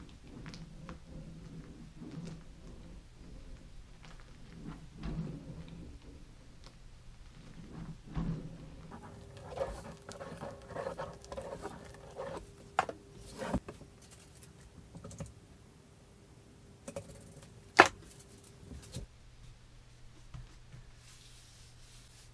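Homemade glue pressure roller being rolled back and forth under hand pressure over a sheet-zinc countertop, spreading glue beneath the zinc, with a run of small clicks, knocks and rattles. A sharper knock stands out a little before the end.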